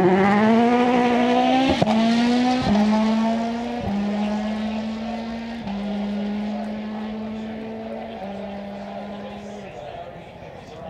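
Citroën C3 WRC rally car's 1.6-litre turbocharged four-cylinder engine at full throttle, changing up through the gears about five times, with a sharp crack at most of the changes. It grows steadily fainter as the car draws away.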